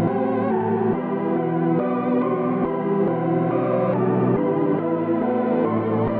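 Trap beat instrumental in a stripped-down section: sustained keyboard-synth chords that change about once a second, sounding muffled with the highs cut off and no drums.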